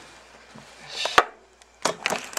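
Handling noise close to the camcorder's microphone: a brief rustle ending in a sharp click about a second in, then a louder knock near the end as the camera is moved.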